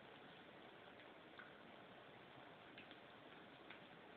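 Onion pakoras deep-frying in hot oil in a wok: a faint, steady sizzle with a few small pops from the oil.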